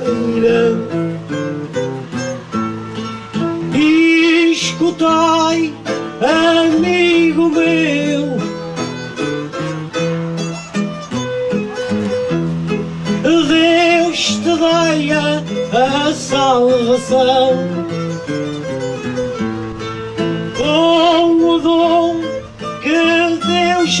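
Guitars playing the instrumental interlude of a cantoria between sung verses: a plucked melody with wavering, bent notes that comes back in short phrases every few seconds over a steady strummed bass.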